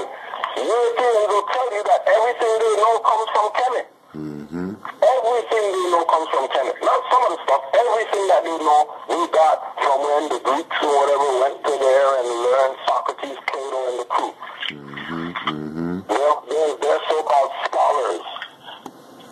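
A voice speaking almost without pause, thin and narrow-band like a radio or an old recording, with a lower buzzing sound briefly about four seconds in and again about fifteen seconds in.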